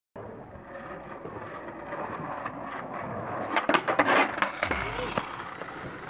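Skateboard wheels rolling on asphalt, growing louder, with several sharp clacks of the board about three and a half to four and a half seconds in.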